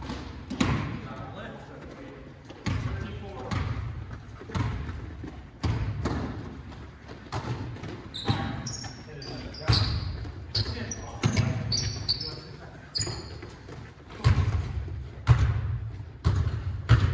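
A basketball being dribbled and bounced on a hardwood gym floor, with irregular thuds about once a second that ring out in the large hall. Short high sneaker squeaks come in the middle.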